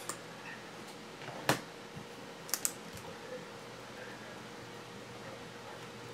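A few light, sharp clicks at the desk: one louder click about a second and a half in and a quick double click a little later, over a faint steady hum.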